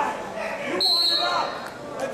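Voices of spectators and coaches calling out in a gym, echoing, with a brief high squeak of wrestling shoes on the mat just before halfway through.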